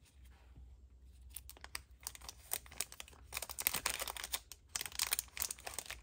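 A stack of small paper tickets being flipped and handled: soft rustling and rapid crackles that begin about a second in and grow busier toward the end.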